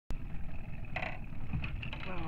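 Small outboard motor running steadily on a boat, a low rumble under a thin steady whine, with a few short knocks about a second and a half in.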